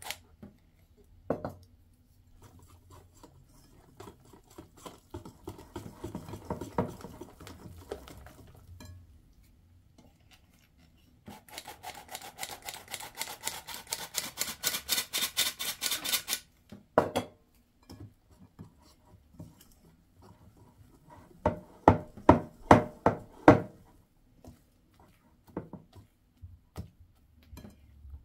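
A metal flour sifter rasping as flour sifts into batter, then a wire whisk beating the flour into the batter in a bowl with quick strokes, about six a second, for several seconds. Later there is a short cluster of sharp knocks.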